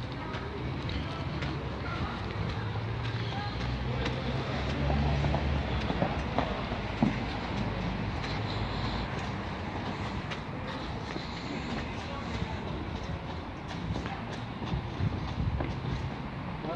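Steady outdoor noise with a low rumble that swells in the first half, and a couple of sharp knocks a little past the middle.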